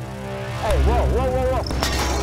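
Film sound design: a deep low rumble swells in about a third of the way through under a short wavering, rising-and-falling squeal, with a sharp click near the end.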